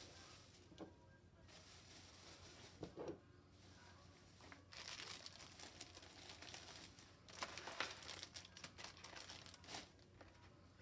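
Faint crinkling of plastic retail packaging as packaged items are handled and set down on a countertop, loudest in two stretches in the second half, with a few light knocks earlier.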